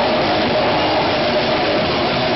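Live heavy metal band playing, with the drum kit loud and close and distorted guitars: a fast, dense, steady wall of sound.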